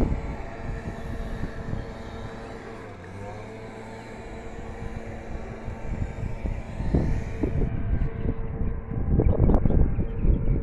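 A steady engine drone holding an even pitch, under wind buffeting the microphone, with the gusts strongest at the start and again from about seven seconds in.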